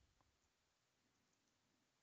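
Near silence: faint room tone with a few very faint computer keyboard clicks.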